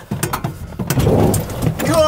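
Electric off-road golf cart pulling away on snow: a low rumbling noise of tyres rolling over snow with scattered small clicks, strongest about a second in, while its 72-volt electric drive itself stays almost silent.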